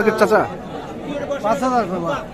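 Speech: men talking in Bengali, with the chatter of other voices behind.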